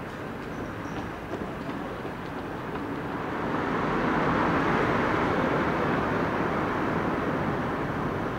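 A car driving past on the street: engine and tyre noise that swells to a peak about halfway through and then slowly fades as it moves away.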